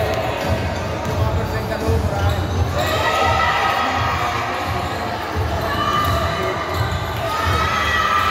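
Basketball game in a large, echoing gym: a basketball bouncing on the court with repeated low thuds, under players' and spectators' voices.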